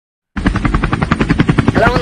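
Helicopter rotor chop, a loud, rapid, even beat of about ten strokes a second, starting suddenly just after the opening. A voice begins near the end.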